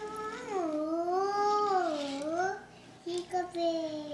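A small child's high voice in long, drawn-out singsong calls that glide up and down in pitch, followed near the end by a couple of shorter falling calls.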